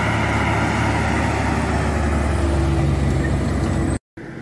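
Big tractor's diesel engine running steadily under load as it pulls a vertical tillage tool through dry soil, with a higher steady note joining about two and a half seconds in.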